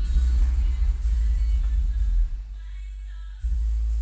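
Bass-heavy music played loud through a car's newly installed Pioneer system, two 12-inch subwoofers driven by a 1200 W amp, the deep bass dominating. The bass eases off a little past halfway and comes back strongly near the end.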